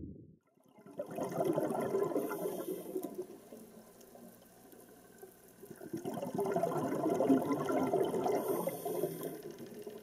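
Water bubbling and rushing, as heard underwater, in two swells: one starting about a second in and a second from about six seconds in.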